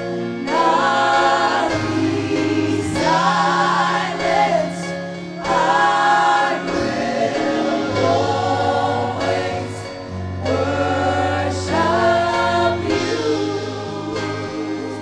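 Church praise team singing a gospel worship song together, several voices in phrases of a few seconds with short breaks, over a band with held bass notes.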